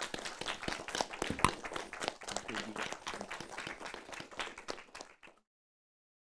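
Audience applauding, a dense patter of many hands clapping, which cuts off suddenly a little over five seconds in.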